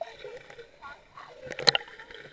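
Pool water sloshing and splashing against a GoPro at the water surface during swimming, with a sharper burst of splashes about one and a half seconds in as the camera dips under.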